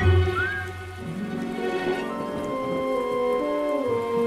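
Cartoon rain sound effect, a steady downpour, under a slow music score. The music has a low note in the first second, then long held notes.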